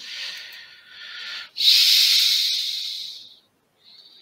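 Breathing close into a headset microphone: two long, hissing breaths, the second louder and about two seconds long, with the start of another near the end.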